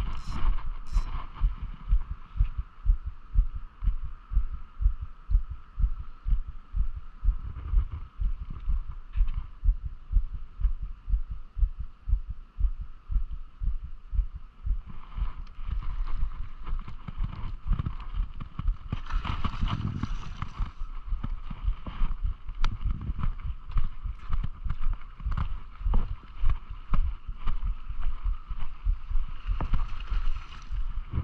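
Wind buffeting the microphone in irregular low thumps over a steady background noise. From about halfway, a spinning reel is wound, adding a busier rattling noise.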